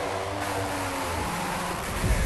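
Hardcore acid electronic track in a dense, noisy passage with no clear beat, a layered held tone fading out about a second in.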